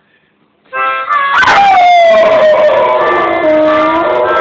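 A dog howling along to harmonica blues music. After a brief hush the music comes in under a second in. About a second and a half in, the dog starts one long howl that slides down in pitch, holds, then drops lower near the end.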